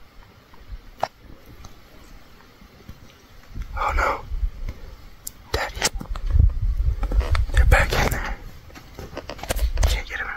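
Low, hushed voices with rustling and clicking handling noise and a low rumble on the microphone, starting about a third of the way in and getting busier in the second half.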